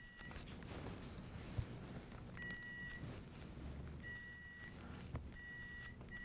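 Electrocautery unit's activation tone: a steady high beep of about half a second, sounding three times after a first one ends at the start, each time the surgeon cauterizes the wound to stop bleeding.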